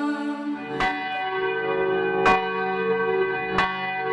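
Background music in which a bell is struck three times, about a second and a half apart, each strike ringing on over steady held chords.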